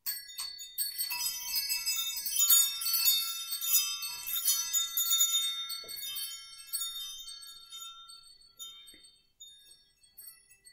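Metal chimes ringing: many high, bright tones struck in quick succession, thick for the first few seconds, then thinning out and fading away near the end.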